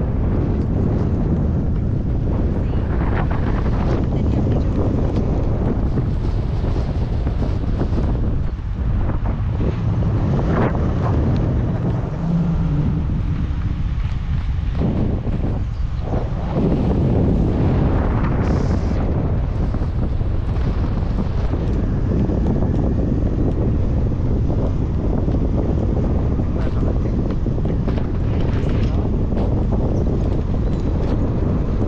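Airflow buffeting the camera microphone of a tandem paraglider in flight: a loud, steady wind rumble.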